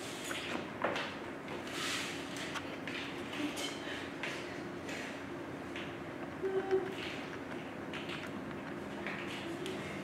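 Scattered light taps, clicks and scrapes of plastic knives, frosting tubs and packaging on a tabletop while cakes are frosted, a few louder knocks about six and a half seconds in, over a steady low room hum.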